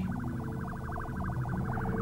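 Synthesized cartoon magic-spell sound effect: a steady warbling electronic tone that pulses rapidly, over a low sustained hum.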